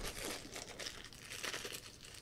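A thin plastic bag crinkling faintly as it is handled between the fingers.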